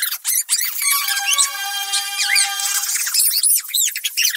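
Cartoon soundtrack played at four times normal speed: voices and sound effects turned into rapid, high-pitched squeaks over music, with a held high tone through the middle.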